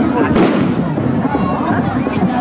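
A firecracker bursting once with a sharp bang about a third of a second in, over the steady chatter of a crowd.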